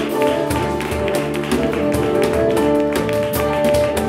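An acoustic jazz quartet playing live: sustained melody notes over a bass line, with frequent short percussive taps.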